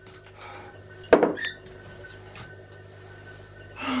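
A single sharp clack about a second in, followed by a brief ringing, as a mobile phone is hung up and put down. Under it runs a faint steady room hum.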